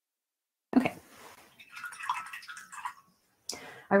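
Faint, irregular water sloshing and dripping for about two seconds, a watercolour brush being rinsed in a water jar.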